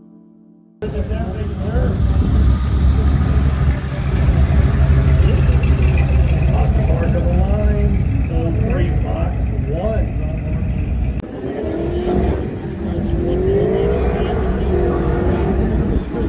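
An early Ford Bronco's engine running as it pulls slowly away, a steady low rumble, with people talking around it. About eleven seconds in the rumble dips and the voices come to the fore.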